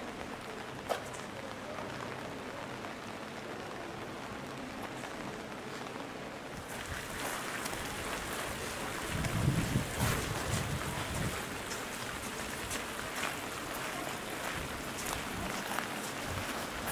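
Steady rain falling on pavement and umbrellas, with scattered drops ticking, and a brief low rumble about nine seconds in.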